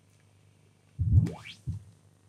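Quad Cortex Neural Capture calibration signal: a single rising sine sweep (chirp) about a second in, followed by a brief low blip, as the unit measures the latency of the amp rig being captured.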